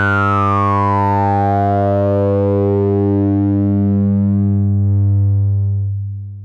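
Abstract Data ADE-20 two-pole filter in low-pass mode with resonance at 100%, filtering a 100 Hz sawtooth: a steady buzzy low tone with a sharp resonant peak that glides down in pitch as the cutoff is swept down. The sound fades out near the end.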